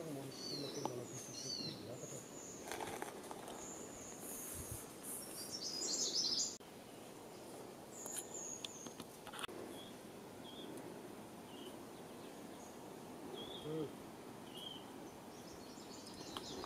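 Outdoor forest ambience with small birds chirping: short high calls in the first half, loudest in a cluster around six seconds. The background drops abruptly after about six and a half seconds, leaving faint short chirps about once a second.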